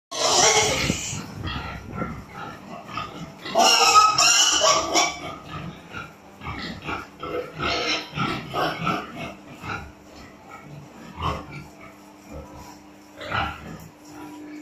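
Several domestic pigs calling in a pen: two loud squealing outbursts, one at the start and one about four seconds in, then a run of short grunts.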